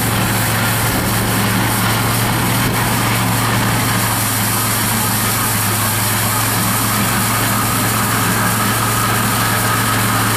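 Mini skid steer loader's engine running steadily, driving a hydraulic Bobcat 48-inch angle broom as it sweeps.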